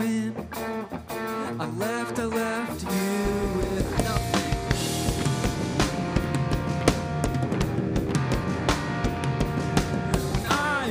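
Live rock band: a sung vocal line over electric guitar, then electric bass and drum kit come in with a steady beat about three seconds in, under held guitar notes.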